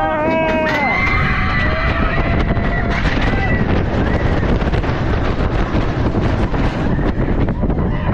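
Riders on a dive coaster screaming in long held cries as the train goes over the vertical drop, giving way after about three seconds to a loud rush of wind over the microphone and the rumble of the train as it plunges.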